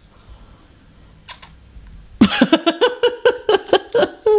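A person laughing in a quick run of short, high-pitched bursts, starting about halfway through after a quiet pause.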